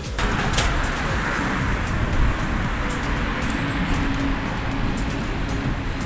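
Steady rush of road traffic, with a low rumble under it. Background music plays faintly over it.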